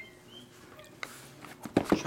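Shrink-wrapped cardboard boxes of trading cards being handled on a table: a single click about a second in, then a few sharp knocks and rustles near the end as the boxes are taken up.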